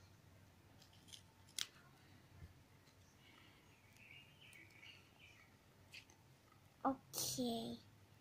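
Faint paper handling: a few light taps and rustles of paper cut-outs being moved and set down by hand. A child's voice is heard briefly near the end.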